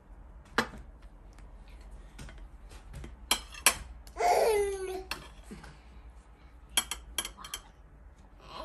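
A table knife scraping and clicking against the rim of an aluminium cake pan as it is run around a baked banana cake with leche flan to loosen it, with scattered sharp metallic clicks and a quick cluster of them near the end. A short voice sound, falling in pitch, comes about four seconds in.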